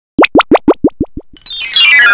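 Logo-intro sound effect: seven quick rising bubble-like bloops, each fainter than the last, then a fast run of bright tones falling in pitch.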